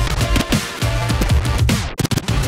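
Turntablist routine played on two gold turntables through a DJ mixer: an electronic, drum-and-bass-style beat cut up from vinyl. Near the end the sound slides sharply down in pitch and drops out for a moment.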